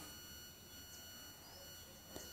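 Near silence with a faint, steady high-pitched electronic whine.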